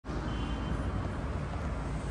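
Steady city-street background noise: a constant low rumble of traffic, with no distinct events standing out.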